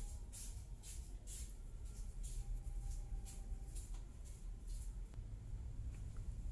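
Faint, soft rustling swishes, about two a second, of fine cotton thread being drawn through stitches by a metal crochet hook as double crochet stitches are worked, over a low steady background rumble.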